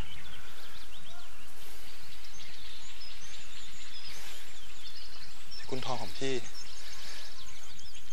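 Small birds chirping with many short, high calls scattered throughout, over a steady low background hum.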